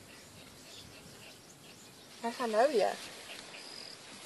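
A short wavering vocal call about two seconds in, its pitch rising and falling twice, over faint insect chirping.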